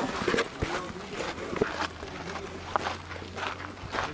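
Irregular knocks and crunching footsteps as a handheld camera is carried along a dirt path, with faint voices in the background.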